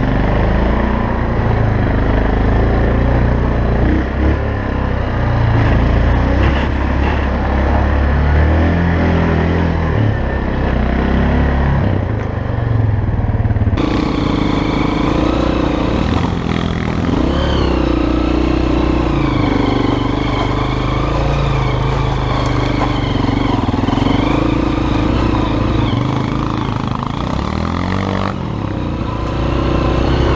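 Yamaha Grizzly ATV engine running under changing throttle. About halfway through it cuts abruptly to a Honda CRF230F dirt bike's single-cylinder four-stroke engine, its pitch rising and falling with the throttle.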